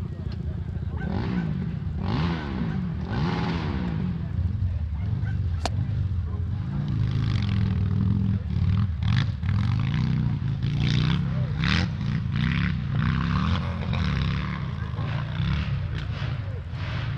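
A motorcycle engine running steadily, its revs rising and falling a few times early on, with people talking over it and a single sharp click partway through.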